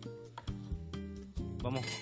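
Soft background music with sustained notes, with a single light clink a little under half a second in.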